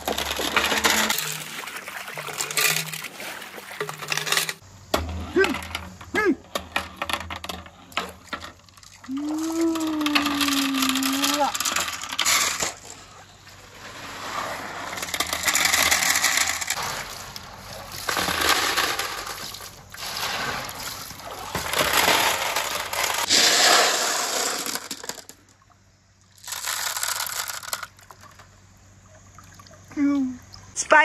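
Many marbles rolling and clattering down a handmade wooden marble run: long waves of dense rattling and clicking that swell and fade over and over, with one quieter gap near the end.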